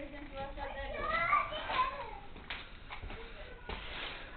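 A young child's high voice vocalizing without clear words, then two light knocks.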